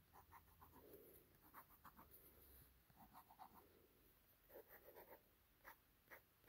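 Faint scratching of a pen drawing on paper, in short runs of quick strokes with brief pauses between.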